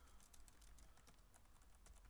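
Faint computer keyboard typing: a quick run of many light keystrokes as text is edited.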